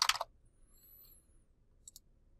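Computer keyboard typing: the last few keystrokes of a typed search term in the first quarter second. Then a single short click near the end.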